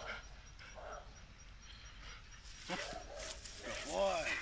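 Brindle pit bull-type dog on a leash giving a few short, high barks, starting a little past the middle, as it strains toward the decoy after being called off the bite.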